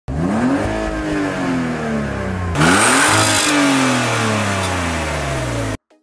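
Car engine revved twice while stationary in park: each time the pitch climbs quickly and then sinks slowly as the revs fall back, the second rev a little louder. The sound cuts off suddenly near the end.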